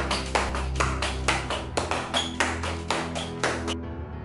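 Rapid, sharp slaps of a hand striking the foot in repeated cai jiao flick kicks, about three a second, over background music with a steady low bass. The slaps stop abruptly shortly before the end while the music goes on.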